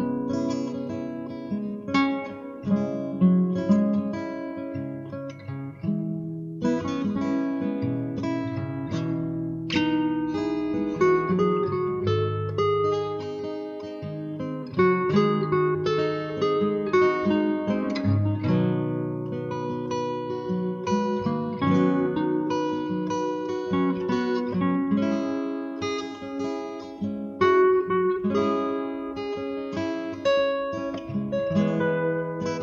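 Acoustic guitar playing a relaxing instrumental piece of picked notes and chords.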